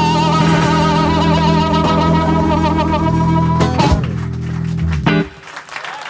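Live rock band with acoustic and electric guitars, bass and drums holding a final chord, with a high note wavering over it. A last sharp hit comes just before four seconds in, and the chord rings on and then stops about five seconds in, ending the song.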